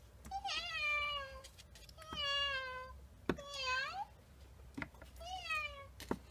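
Meowing: four drawn-out meows, each about a second long, the third dipping and rising at its end. A couple of faint clicks come between the calls.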